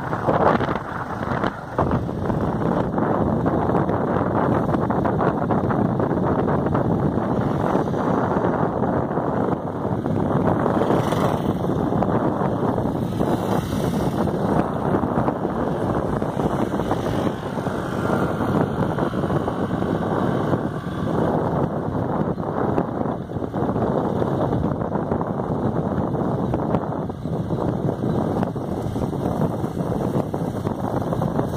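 Steady wind buffeting on the microphone of a camera carried on a moving vehicle, with road noise underneath.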